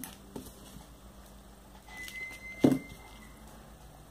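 Quiet hand-beading sounds: glass crystal beads and pearl beads clicking lightly against each other as nylon thread is pulled through them. There are a few scattered light clicks, the sharpest about two and a half seconds in, with a faint thin high tone through the middle.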